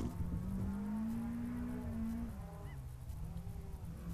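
Distant rally car's engine, a steady drone that climbs slowly in pitch, drops lower a little past halfway, then picks up again.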